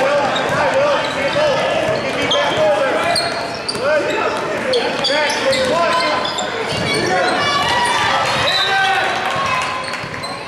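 Basketball bouncing and being dribbled on a gym floor, with a stream of unclear voices from players and spectators, all echoing in a large hall.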